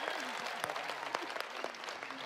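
Studio audience applause dying away, with faint voices calling out under it.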